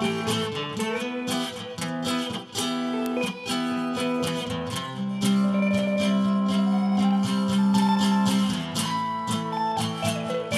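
Acoustic guitar strummed in a steady rhythm, with an electric guitar playing lead lines with bent notes over it. A long low note is held from about five to eight and a half seconds in.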